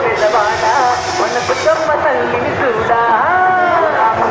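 A voice singing in long, sliding phrases, loud and continuous.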